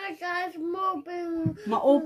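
A young boy singing in a high voice, holding steady notes, with his pitch sliding down near the end.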